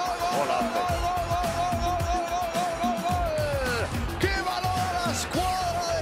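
Spanish football commentator's drawn-out goal cry: a long "goool" held on one wavering pitch for nearly four seconds, sliding down, then a run of short "gol" shouts.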